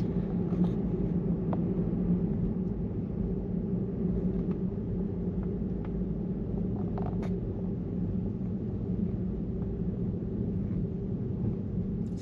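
Steady low rumble of road and tyre noise inside a car's cabin while driving.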